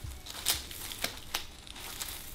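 Leaves and dried plant stems rustling and crinkling as they are handled up close, with a few sharp crackles.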